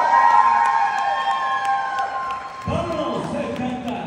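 Audience cheering in answer to a shout-out, led by one long held whoop that falls slightly and lasts about two and a half seconds, then voices talking.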